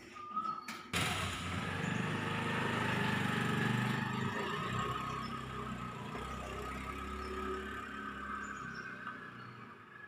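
Motor scooter being started: a few clicks, then the small engine catches suddenly about a second in and runs as the scooter pulls away, its sound slowly fading as it rides off into the distance.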